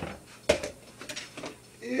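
A sharp clink of kitchenware about half a second in, then a few faint small knocks.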